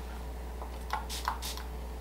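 Quiet room tone: a steady low hum with a few faint, soft clicks about a second in.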